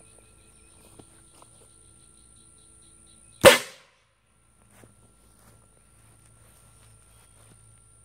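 A 16-cubic-inch PVC air cannon with an electric solenoid valve, charged to 300 PSI, fires a golf ball once about three and a half seconds in: a single sharp blast of released air that dies away within about half a second.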